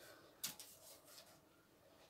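Near silence: room tone, with one faint soft tap about half a second in and a little light handling noise after it.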